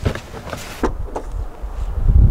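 Several short knocks and clicks with some rustling, then a low rumble of wind on the microphone building near the end.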